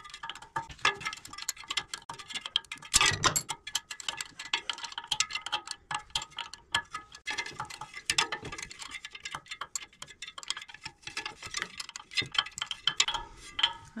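A wrench tightening the bolts of a clutch fan: a steady run of quick metallic clicks and clinks, with a louder clunk about three seconds in.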